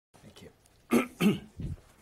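A man's voice in two short, loud, explosive bursts about a third of a second apart, followed by a softer, lower one.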